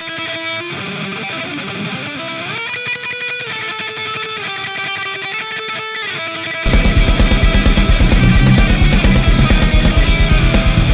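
Distorted electric guitar through the Audio Assault Shibalba amp sim plugin, first a lone lead line of held notes with an upward bend about a quarter of the way in. About two-thirds in, the heavy metal rhythm guitars and drums come in much louder with a fast, pulsing beat.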